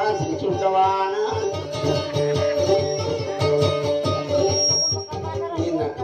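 Music: a guitar plucking a steady rhythmic accompaniment, with a voice singing over it near the start.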